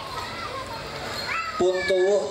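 Background hubbub of children's voices in the seated crowd, with faint high calls during a pause in the prayer; a man's voice over the PA resumes near the end.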